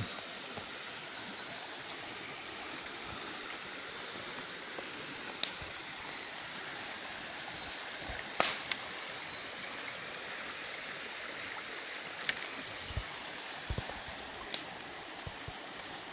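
Shallow stream running steadily over stones, with a few sharp clicks and low knocks here and there.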